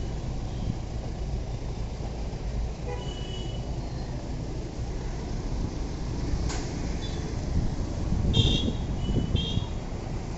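Steady low rumble of a car engine running and street traffic, with short high-pitched toots about three seconds in and several more near the end. A single sharp click sounds a little past the middle.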